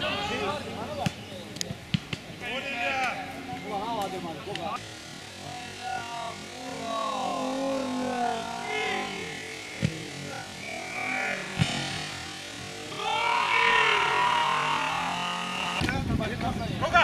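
Men's voices calling and shouting across a football pitch, spectators and players, louder in the first few seconds and again near the end, with a few sharp knocks in between.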